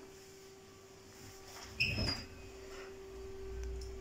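Oven door being opened, giving one short squeak about two seconds in, over a faint steady hum.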